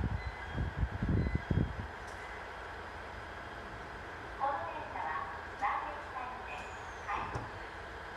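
Steady hum of an electric train standing at a station platform, with a few low, muffled thumps in the first two seconds. A voice comes in about four and a half seconds in.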